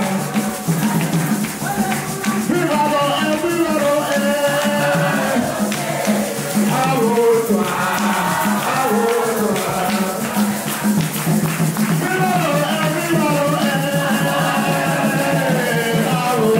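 Live worship music: a lead singer on a microphone and a congregation singing together over a hand drum beating a steady rhythm.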